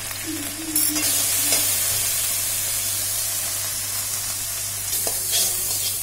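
Spices and red chilli paste sizzling in hot oil in a metal kadai, stirred with a metal spatula. The sizzle turns louder about a second in and then holds steady, with a few light scrapes of the spatula.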